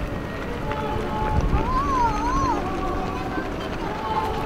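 A voice holding a long sung or hummed note that wavers up and down twice in the middle, over steady outdoor background noise.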